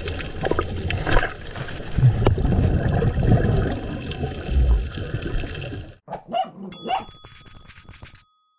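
Underwater water noise on an action camera: churning, bubbling water with low rumbling and scattered clicks. About six seconds in it cuts off abruptly, and a short electronic outro sound of clicks and a few ringing chime tones follows.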